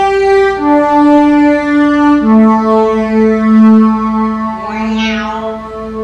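Synthesizer voice of a Roland electronic organ playing sustained notes that step down in pitch, three in all, changing about half a second in and again about two seconds in, with the lowest note held to the end.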